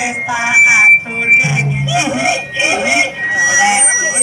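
Several people's voices over music, with a steady high whistle-like tone held through parts of it.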